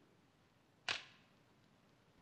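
A single short, sharp crack or swish about a second in, fading quickly, with near silence around it.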